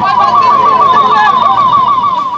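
Siren of a Fire Service and Civil Defence van, sounding a fast, steady warble of rising sweeps, about seven a second.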